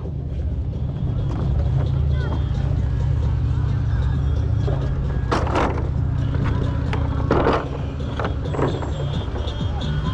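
A steady low machine hum with faint distant voices. A plastic alpine-slide sled clatters and knocks twice, about five and a half and seven and a half seconds in, as it is lifted off the track.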